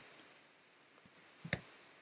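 A few faint computer mouse clicks in a quiet room, the loudest about a second and a half in.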